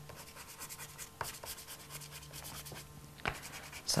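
Stick of soft pastel scratching across textured paper in many quick, faint strokes.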